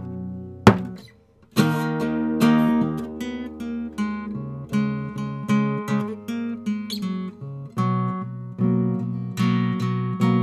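Acoustic guitar playing the instrumental intro of a song: a strum, a brief pause about a second in, then a steady run of strummed and picked chords.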